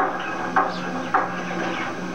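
Chalk writing on a chalkboard: a few short, sharp taps and scrapes as the chalk strikes and drags across the board, over a steady low hum.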